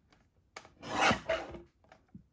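Fiskars paper trimmer's blade carriage drawn down the rail, slicing a thin strip off a piece of cardstock: a single rasping cut of just over a second, starting about half a second in.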